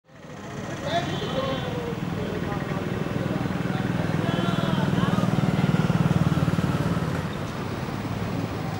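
A motorcycle engine running, growing louder through the middle and easing off near the end, with voices in the background.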